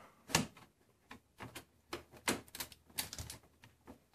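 Irregular light clicks and taps of a motherboard being nudged and seated against a metal PC case and its I/O backplate while it is brought into alignment. The sharpest tap comes about a third of a second in, and smaller clicks follow every half second or so.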